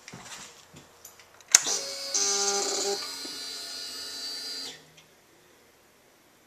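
A click as the ignition of a fuel-injected 2007 Suzuki SV650S is switched on, then an electric whir for about three seconds that cuts off suddenly: the fuel pump priming. The engine is not started.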